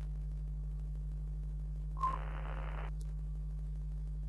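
Steady low electrical hum, the drone of an old television-style test card, with a short beep and then a burst of noise lasting just under a second about two seconds in.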